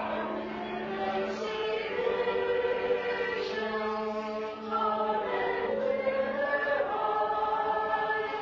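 A congregation singing a hymn together, accompanied by an organ holding sustained chords under the voices.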